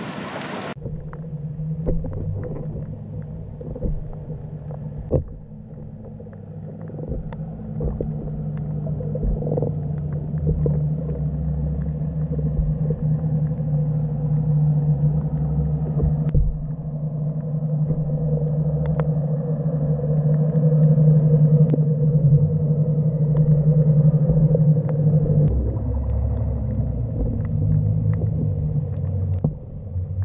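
Muffled underwater sound from a submerged action camera: a low rumble with a steady low hum that stops about 25 seconds in, and scattered faint clicks.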